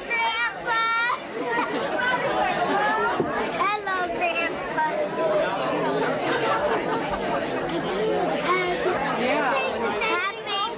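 Indistinct chatter of several voices talking over one another, children's voices among them.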